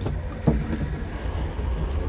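Low rumble of wind and handling on a phone microphone outdoors, with a single knock about half a second in.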